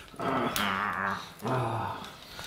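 A man's voice making two wordless, animal-like vocal sounds: the first about a second long, the second shorter.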